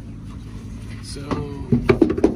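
A man's voice saying a single word about a second in, over a steady low background rumble, with a few sharp clicks near the end.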